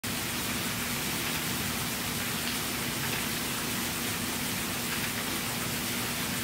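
Steady, even hiss of background noise with a faint low hum beneath it.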